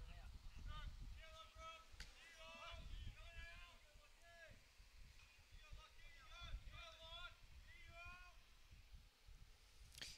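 Faint, distant high-pitched voices calling out in short repeated arched calls, over a low rumble.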